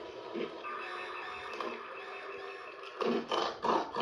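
Music from a TV commercial heard through a television's speaker, with steady held tones for about three seconds, then louder and choppier in the last second as the next ad begins.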